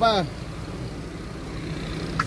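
Steady low hum of the BMW X5 idling, heard from inside the cabin, after the last syllable of a man's speech right at the start.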